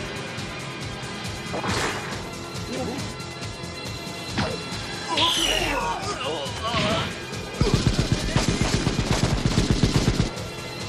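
Animated action-film sound effects: sudden crashes and impacts, then, for the last couple of seconds, a fast even run of shots, about eight a second, like automatic gunfire hitting the android. Music plays underneath.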